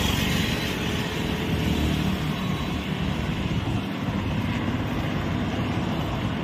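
Steady road traffic noise, vehicles running along the road with a continuous low engine hum and rushing sound.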